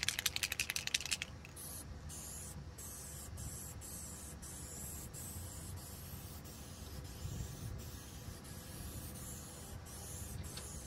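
Masking tape pulled off its roll in a quick run of crackles for about the first second, then a steady faint hiss with a few short breaks.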